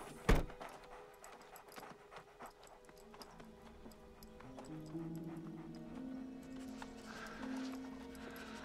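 A car door slams shut just after the start, followed by light scattered footsteps on a dirt forest floor. From about halfway, a low, sustained music score of held notes comes in.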